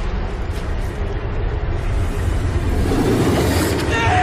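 Loud roar of rushing, crashing surf, a dense wash of water noise over a deep rumble, swelling louder about three seconds in as the wave breaks.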